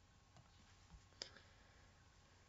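Near silence: room tone, with a faint computer mouse click a little over a second in and a couple of softer clicks before it.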